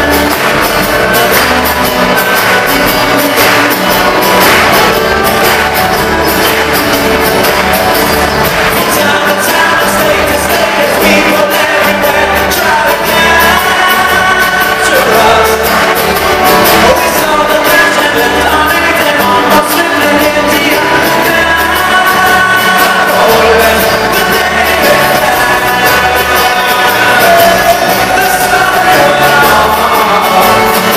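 Live band music with sung vocals: banjo, acoustic guitar and upright bass playing, loud and steady.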